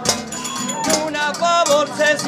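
Murcian aguilando folk music: a group playing, with sharp percussion strikes in the first second and then a melody of held, slightly wavering notes.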